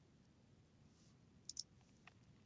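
Near silence, with two faint, short clicks close together about one and a half seconds in.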